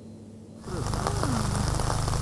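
Outdoor ambience from field footage: a steady hiss with a strong low rumble that starts suddenly about half a second in, after a brief lull, with a few faint falling tones in it.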